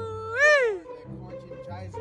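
A long, high-pitched drawn-out voice, held level and then swooping up and down in a meow-like wail about half a second in. A faint low hum follows.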